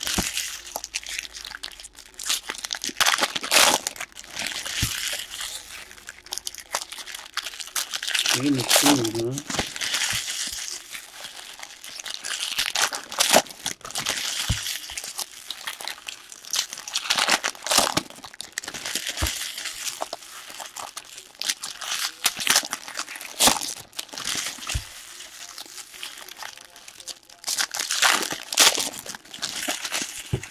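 Foil trading-card pack wrappers crinkling and being torn open, with the cards inside handled, in repeated rustling crackles throughout. A short voice sound is heard about nine seconds in.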